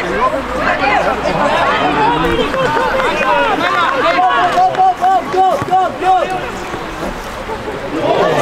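Several voices shouting and calling over each other at a football match, with a quick run of short repeated calls about halfway through, about three a second, and the calling thinning out near the end.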